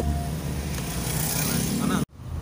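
Steady deep road and engine rumble heard from inside the cabin of a moving car.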